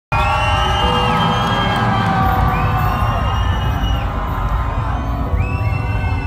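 Loud, bass-heavy music through a concert PA system, with the crowd cheering over it and high sliding tones rising and falling on top.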